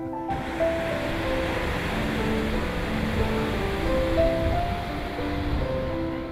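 Ocean surf breaking and rushing on a shore, with background music of slow held notes over it. The surf starts just after the opening.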